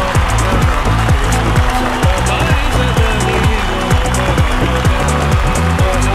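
Loud music with a strong, steady drum beat, with audience applause beneath it.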